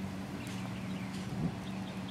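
Low-level outdoor background: a steady low hum with a few faint, short, high chirps, likely birds.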